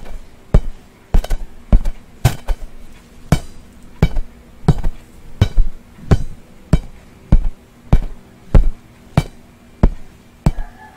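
A pencil striking a soccer-patterned bouncy ball that hangs in a thin plastic bag, making sharp popping taps at a steady pace of a little under two a second, once or twice in quick pairs.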